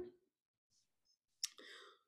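Near silence broken by one faint, sharp click about one and a half seconds in, followed by a brief faint rustle.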